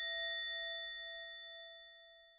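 A single bell-like ding added as a comic sound effect, struck just before and left ringing, its clear tone fading away slowly.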